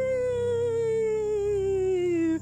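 A woman's voice making one long ghostly 'ooooh', its pitch slowly falling, over background music.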